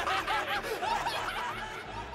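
A man laughing in a long, mocking run of ha-ha's, pitched arcs several a second, slowly fading: the demon Sukuna's evil laugh from the Jujutsu Kaisen anime.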